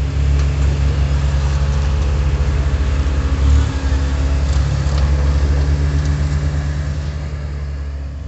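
A heavy engine running steadily: a loud low rumble with a constant hum over it, swelling briefly about three and a half seconds in.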